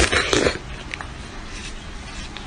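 A domestic cat mouthing and biting an orange object right at the microphone. A loud, noisy burst comes in the first half second, followed by quieter scuffing and a few small clicks.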